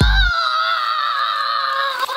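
A man screaming, one long high scream held on a slightly wavering pitch, with a music beat thumping briefly at the very start.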